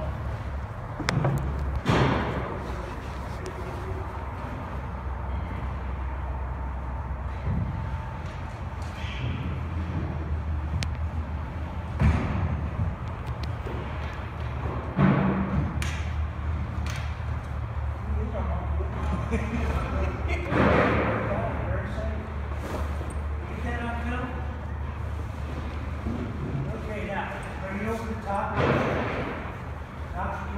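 Thumps and rustling from a heavy tarp being pulled and tucked over a tall load, with the loudest knocks near the start and at about 12, 15 and 21 seconds. A steady low hum runs underneath.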